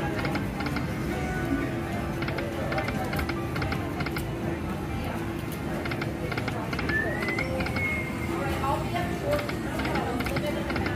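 Silk Road video slot machine spinning its reels: clusters of quick clicking ticks as the reels spin and stop, over the machine's game music and a background of casino voices. A short rising chime sounds a little past the middle.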